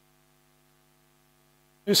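Faint steady electrical mains hum from the hall's sound system. Near the end a sudden loud pop as a microphone comes on, and a man's voice begins.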